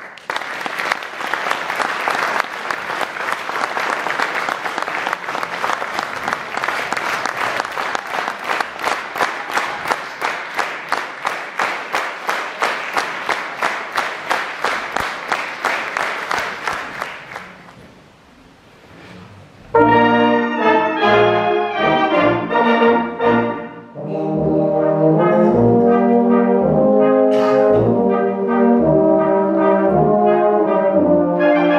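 Audience applause that turns into steady clapping in time, fading out after about 17 seconds. After a short pause a brass band of flugelhorns, tubas and clarinets starts up loudly with a waltz.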